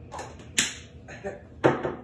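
A short hissing puff from an aerosol can of cooking spray, followed about a second later by a single knock, as of an object set down on a countertop.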